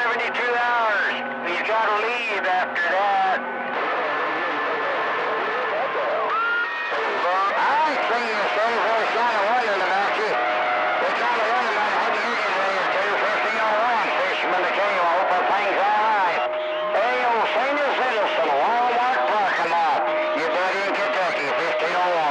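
Garbled, overlapping voices of distant CB operators received on channel 28 (27.285 MHz) over long-distance skip, under a bed of static. Steady whistle tones cut in about three seconds in, again near seventeen seconds, and once more near the end.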